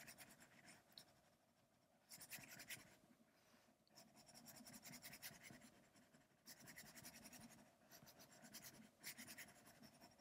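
Faint stylus tip scratching and tapping fast on an iPad's glass screen in several bursts of quick back-and-forth strokes, shading an area solid.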